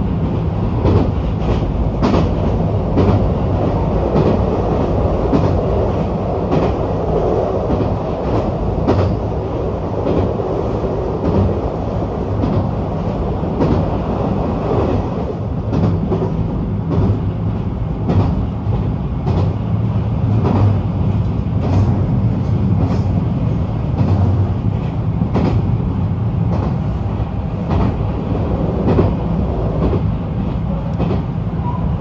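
Train running at speed, heard from inside the carriage: a steady low rumble with a hum underneath, and frequent sharp clicks and knocks from the wheels on the rails.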